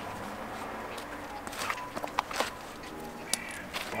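A few scattered scuffs and knocks of sneakers and hands against a concrete wall as someone climbs it, over a faint outdoor background.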